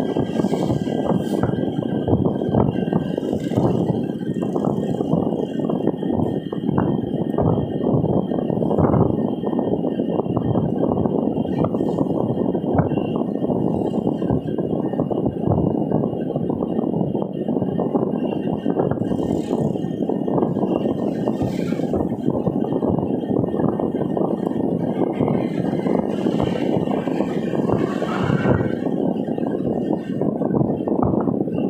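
Steady road noise of a moving car heard from inside the cabin: tyre and engine noise at an even level, with a faint thin high tone running above it.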